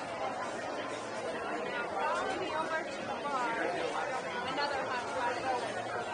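Crowd chatter: many people talking at once in a crowded restaurant hall. One nearer voice comes through more clearly in the middle.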